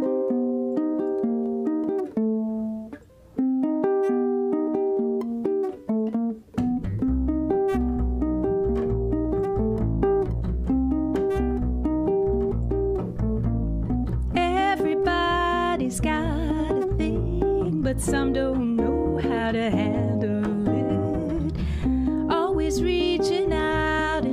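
Nylon-strung tenor ukulele in baritone tuning playing a chord groove alone, with two short breaks. About six seconds in, a plucked upright double bass joins with a low bass line, and the two play on together.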